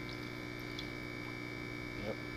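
Steady electrical hum from the air pumps aerating the minnow tanks, with faint water noise from the tank.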